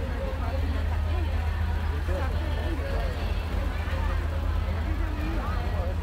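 Low, steady engine noise of vehicles going past, with many people talking at once over it.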